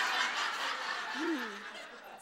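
Studio audience laughter that fades over the two seconds, with a brief low voice sound about a second and a half in.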